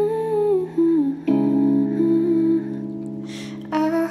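Slow pop song: a woman's voice hums a wordless melody over held chords, which change about a second in.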